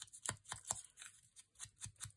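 Ink blending tool's pad rubbed repeatedly along the edge of a paper tag: faint, quick scratchy strokes, about five a second.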